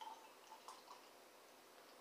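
Beer pouring from an aluminium can into a glass mug, very faint: a few soft splashy ticks in the first second, then barely audible.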